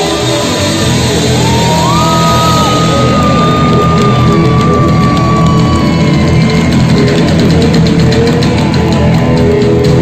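A rock band playing live through a PA in a large hall: electric guitars, bass, drums and keyboard, with one long held high note from about two seconds in to about six.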